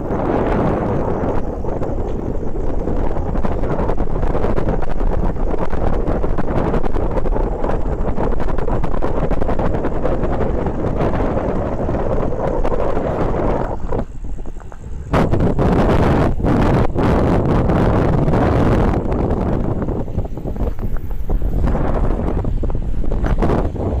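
Loud wind buffeting the microphone of a camera on a bicycle riding fast downhill, a steady rush that drops off briefly a little past halfway through.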